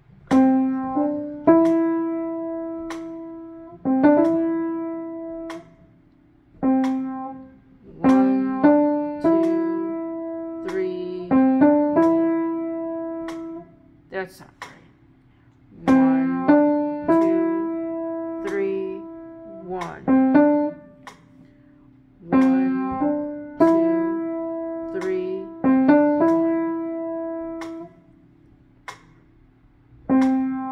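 Piano practice: a short phrase of notes is played, broken off, and started again several times, with pauses of a second or two between the attempts.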